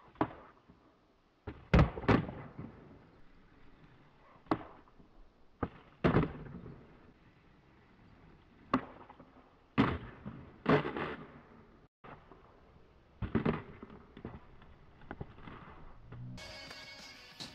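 Skateboard on concrete: a series of sharp clacks and thuds as the tail is popped and the board lands, often in pairs about a third of a second apart, with the wheels rolling between them.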